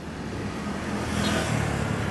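Road traffic, cars and motorbikes driving past, their engine and tyre noise swelling as a vehicle passes about halfway through and then easing off slightly.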